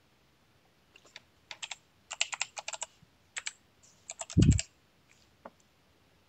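Computer keyboard typing in quick bursts of keystrokes, with a heavier low thump among the last keys about four and a half seconds in.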